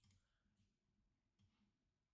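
Near silence, with two very faint clicks of a computer mouse: one right at the start and another about a second and a half in.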